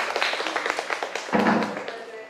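A small audience clapping by hand, a dense run of irregular claps that thins out near the end, with voices among it.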